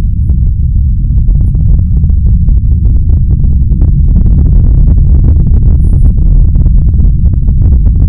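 A loud, continuous deep rumble with scattered crackling over it. It is a recording presented as the sound picked up by a microphone lowered into a superdeep borehole.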